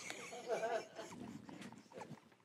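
Faint, off-microphone voices of people in the room talking, strongest about half a second in and fading toward the end.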